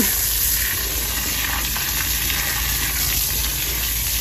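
Garden hose spraying water steadily onto a stepping-stone walkway, washing play sand into the joints between the stones.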